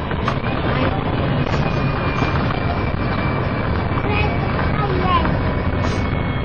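Steady engine and road rumble heard inside the cabin of a MAN 18.220LF single-deck diesel bus in service, with faint voices of passengers talking.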